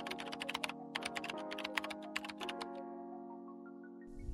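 Typing sound effect: a quick, irregular run of key clicks that stops about three seconds in. It plays over soft, sustained background music chords.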